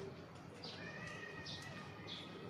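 Birds chirping in short high notes, about two a second, with a longer, steady call about a second in, over faint outdoor background hum.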